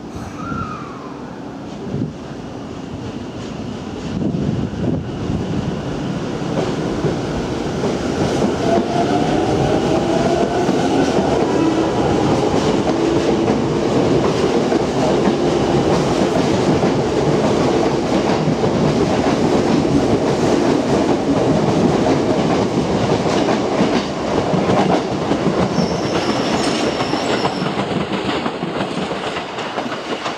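Tokyo Metro 10000 series electric train pulling out and gathering speed, its traction motors whining up in pitch over a growing rumble and wheel clatter. The sound gets louder from about four seconds in and then stays steady.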